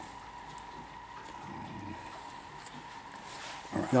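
Faint light ticks and scratching as fingers handle fine copper magnet wire and the parts of a toroid winder, over a steady faint whine.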